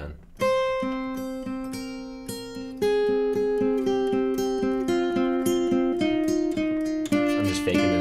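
Acoustic guitar played with a pick in a pedal-tone scale exercise. A low note is repeated steadily while a higher note steps down the scale from the octave.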